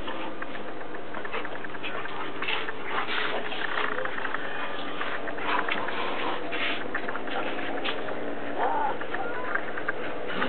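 Two dogs, a Bouvier des Flandres and a small terrier, playing rough on grass: a busy run of short scuffling noises, with one of them giving a short whine near the end.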